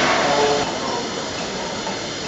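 LNER Class A4 Pacific steam locomotive standing at the platform, with a steady hiss of steam that is a little louder in the first half second.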